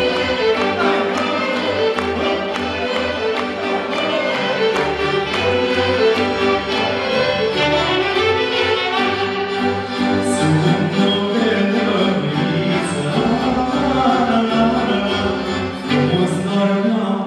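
Live Romanian folk orchestra playing an instrumental passage, violins leading over double bass and accordion.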